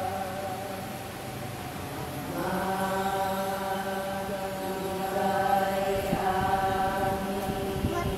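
A congregation chanting together in long held notes. The pitch steps to a new note about two seconds in and again about six seconds in.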